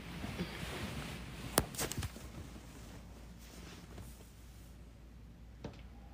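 Handling noise from a hand-held phone: a few sharp clicks about one and a half to two seconds in, over a low steady hum.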